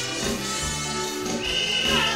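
Calypso band playing the song's instrumental introduction, with a steady beat. A high note is held for about half a second near the end.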